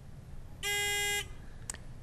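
Quiz-bowl buzzer system sounding one steady electronic tone, about half a second long, signalling that a team has buzzed in to answer.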